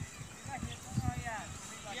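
Speech: a man's short vocal sound about a second in, then a spoken word at the very end, over irregular low rumbling.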